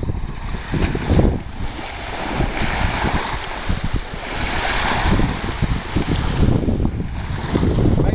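Wind buffeting the microphone in uneven gusts, over small waves washing onto a sandy beach. A louder wash of surf comes through from about two and a half to five and a half seconds in.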